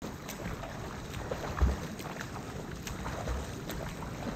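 Water splashing and sloshing from a swimmer's freestyle arm strokes, picked up at the water's surface, with two low thuds of water against the microphone.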